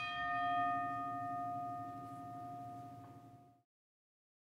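A single boxing-ring bell ringing out from one strike. The ring holds several steady tones and fades away over about three and a half seconds.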